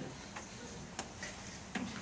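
Handling noise from a handheld microphone being passed between panelists: three faint, short clicks spread over the two seconds, over quiet room tone.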